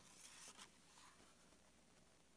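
Faint rustle of a hardcover picture book's paper page being turned, in the first half second or so, then near silence with room tone.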